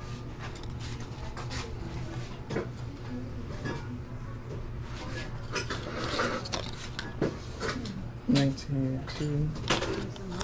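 Handling noise from a plastic action figure and its paper tag being turned over in the hands: scattered light clicks and knocks, with a brief rustle about six seconds in. A voice talks near the end.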